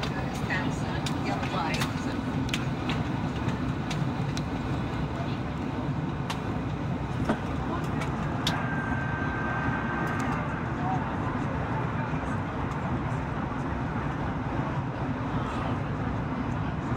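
Steady cabin drone of a Boeing 737-800 on approach, the CFM56 engines and airflow heard from a window seat over the wing, with scattered light clicks and a brief steady high tone about halfway through.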